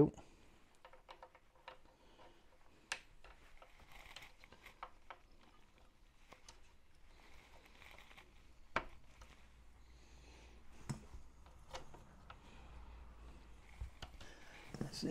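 Scattered light clicks and taps of small metal parts being handled, with a few sharper clicks spread through, as a metal suspension arm and its fixings are fitted to a scale model tank hull; soft rustling between them.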